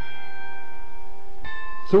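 Chimes of a large hanging clock: slow, ringing bell notes that hold on, with a new note struck near the end.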